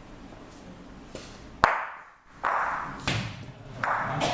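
A single sharp, ringing click of one hard bocce ball striking another, followed a moment later by a short rush of noise and two lighter knocks.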